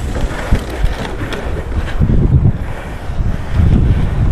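Wind buffeting a shoulder-clipped microphone while inline skating, over the rolling of the skate wheels on rough pavement, with two stronger low gusts about halfway through and near the end.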